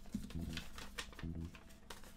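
Faint rustling and clicking of a paper letter being handled and unfolded, with two short low hums.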